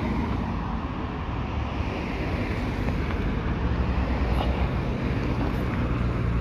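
Street traffic: cars driving past close by, a steady road noise with low rumble.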